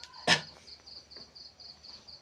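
A cricket chirping steadily, about four high chirps a second, with one sharp knock about a third of a second in.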